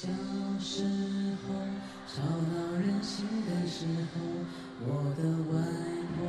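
A male voice singing a slow Mandarin ballad in long, held phrases that each begin with an upward slide, over a steady sustained accompanying note.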